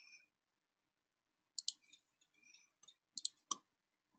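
Faint computer mouse clicks: a quick pair about one and a half seconds in, then three more close together a little past three seconds.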